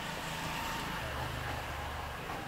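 A motor vehicle passing: a low rumble that grows louder about a second in, over steady city background noise.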